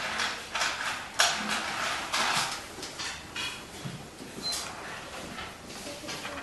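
Irregular rustling and shuffling noises, with one sharp click about a second in.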